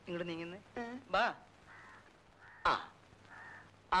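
Crows cawing in the background, three short harsh caws in the second half, between brief fragments of voices.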